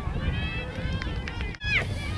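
Voices calling out across an outdoor soccer match over a steady low wind rumble on the microphone. The sound cuts out suddenly for an instant about one and a half seconds in.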